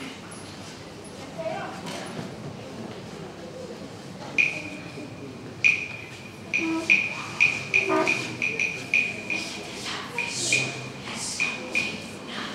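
A school choir's performance beginning in a large reverberant hall: after a few near-quiet seconds, a run of sharp, high, ringing pings starts about four seconds in and repeats roughly twice a second, joined later by soft hissing sounds.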